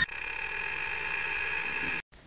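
Steady electronic tone from the channel's logo sting, a bright held drone with no change in pitch, cutting off suddenly at the end.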